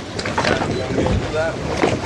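Wind buffeting the microphone over open water, a steady rushing noise with a low gusting thump about a second in.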